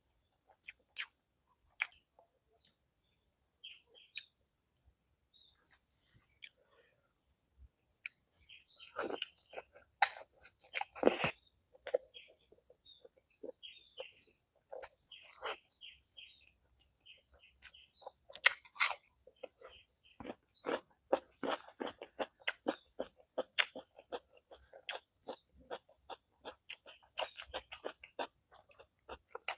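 Close-miked eating sounds from a man eating masala-fried boiled eggs and rice by hand: wet mouth smacks and chewing clicks, sparse at first and coming thick and fast from about nine seconds in, busiest near the end.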